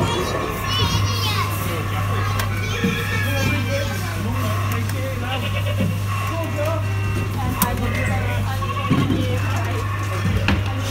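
Music and voices, children's among them, over a steady low hum, with a single click late on.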